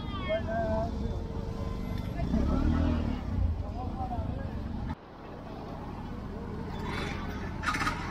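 Street ambience: people talking in the background over motor-vehicle traffic, with a low engine rumble loudest about halfway through. The sound drops suddenly about five seconds in, then traffic noise builds again, with a few sharp clicks near the end.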